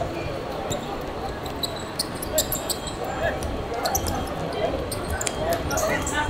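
Five-a-side football on a hard court: the ball being kicked, with many short, sharp high-pitched squeaks from players' shoes on the surface and players calling out to each other.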